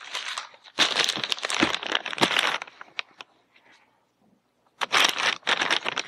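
Plastic poly mailer package crinkling as it is handled. It comes in two spells with a quiet gap of about a second and a half between them.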